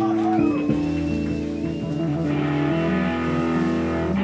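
Rock band playing live through amplifiers: electric guitars and bass hold long, sustained notes that shift to new pitches every second or so.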